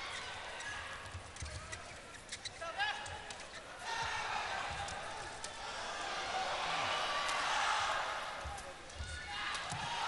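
A badminton doubles rally heard through broadcast sound: a string of sharp racket hits on the shuttlecock over arena crowd noise. The crowd noise swells through the middle of the rally and drops away near the end.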